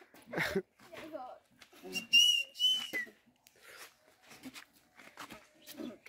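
A whistle: one held high note lasting about a second, falling off at its end, amid faint laughter and murmuring voices.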